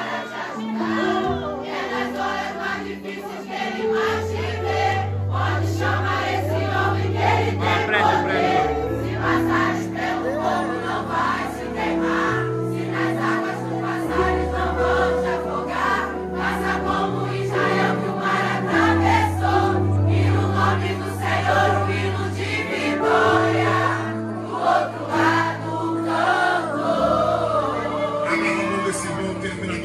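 A congregation singing a worship song together, many voices at once, over an instrumental accompaniment of long held low notes that change every second or two.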